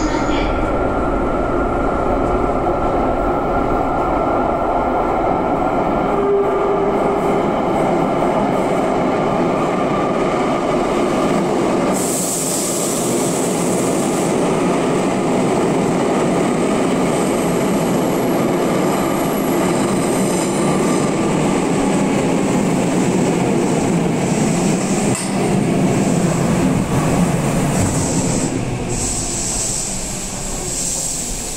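Tokyu electric commuter train running at the station platform: a steady loud rumble of wheels and traction motors, with a brief high squeal about twelve seconds in.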